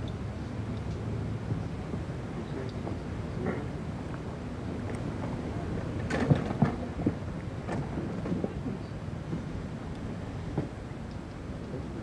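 A golf iron striking the ball on a tee shot, one sharp crack about six seconds in, over steady outdoor ambience with a low, steady hum.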